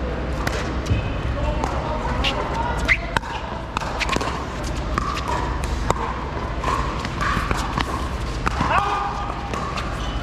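Irregular sharp pops of pickleball paddles hitting the plastic ball, from this court's serve and rally and from neighbouring courts, over indistinct background voices.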